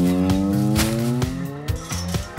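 Background music with one long pitched tone over it that rises slowly in pitch for about two seconds.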